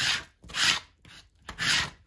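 A plastic card scraping fluid acrylic paint across thin deli paper laid over a stencil, in three rasping strokes: one at the start, one about half a second in and one near the end.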